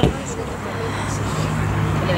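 Open-air ambience at a football pitch: scattered distant shouts from players and spectators, with a low steady hum of a vehicle coming in about halfway through. A sharp click at the very start.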